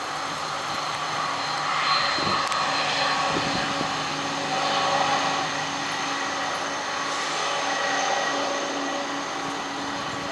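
McDonnell Douglas MD-11 freighter's three turbofan engines at taxi power as it rolls past. The sound is a steady jet whine over a low hum, swelling a little a couple of times.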